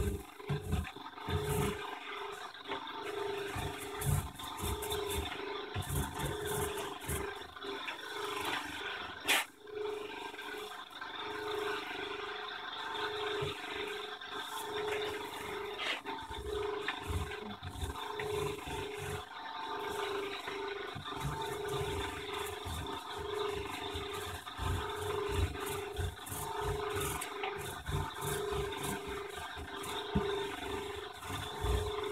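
Small laminating roller rolled back and forth over resin-wetted spread-tow carbon fabric on a board: a rough rubbing rumble in repeated strokes, with scattered low bumps. A single sharp click about nine seconds in.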